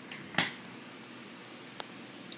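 A sharp click about half a second in, then a fainter short click near the end, over a steady low room hiss.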